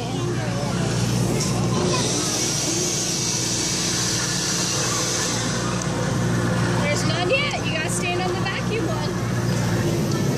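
Steady hum and rushing-air hiss of a blower, the air supply of a pneumatic-tube exhibit that sends canisters up a clear tube. High children's voices chatter over it from about seven seconds in.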